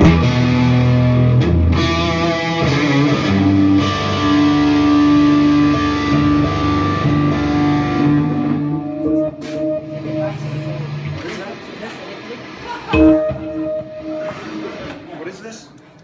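Parker Fly Deluxe electric guitar played through an amplifier: a loud strike right at the start, then sustained ringing notes for several seconds. The playing grows quieter, with another sharp strike about thirteen seconds in that rings briefly.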